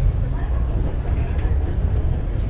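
Mount Takao funicular car running up the slope, heard from inside the cabin as a steady low rumble.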